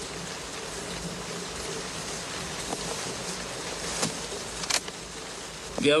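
Steady buzzing hum under a faint hiss, with two short sharp clicks about four and five seconds in.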